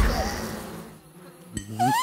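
Cartoon sound effects: a sparkling shimmer fades away over the first second, then after a short hush comes a click and a short rising, buzzy squeak near the end.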